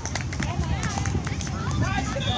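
Volleyball players calling out to each other during a rally, with footsteps and short sharp clicks and scuffs of shoes on the hard outdoor court.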